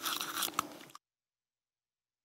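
A toothbrush scrubbing a person's teeth in quick back-and-forth strokes, cutting off suddenly about a second in.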